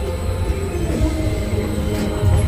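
Spaceship Earth's Omnimover ride vehicle rolling along its track: a steady low rumble with a few held, squeal-like tones above it.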